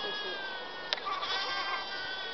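Sheep bleating in long, drawn-out calls, with a single sharp click about a second in.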